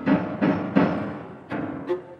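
Piano playing heavy low chords in about three loud strokes, each left to ring and fade. Near the end the viola comes in with sustained bowed notes.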